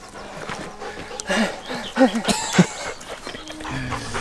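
A dog making a few short, rising-and-falling calls around the middle.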